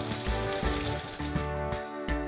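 Frozen vegetable mix sizzling in hot oil in a frying pan with beans and cabbage; the sizzle cuts off about a second and a half in. Background music plays underneath.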